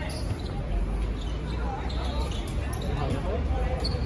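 Dodgeballs thudding and bouncing on a hard court during play, a few separate ball impacts, with players calling out.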